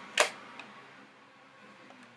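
One short knock a fraction of a second in, handling noise as a plastic toy blaster is picked up, then quiet room tone with a faint steady hum.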